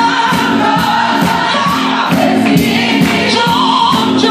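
Gospel choir singing with electronic keyboard accompaniment over a steady percussive beat.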